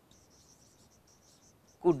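Marker tip squeaking and scratching on a whiteboard as letters are written: faint, short, high squeaks in quick, uneven succession. Near the end a man's voice says "could".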